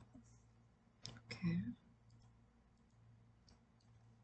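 Computer mouse clicks, a couple of sharp ones about a second in and fainter ones near the end, as points are picked in Archicad's mirror command. Right after the first clicks comes a short murmur of voice, the loudest sound, over a faint steady low hum.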